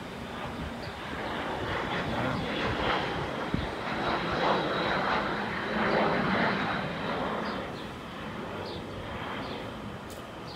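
Hawker business jet's twin rear-mounted turbofans on landing approach, passing overhead: a steady rush of engine noise that builds to a peak around the middle and then fades, with a thin high whine held throughout.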